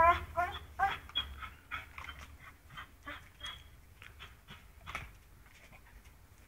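A pit bull whining in short, repeated high-pitched calls, about two or three a second, while hanging from a spring-pole rope by its teeth. The whines are loudest in the first second, then thin out into fainter, scattered whines and small knocks.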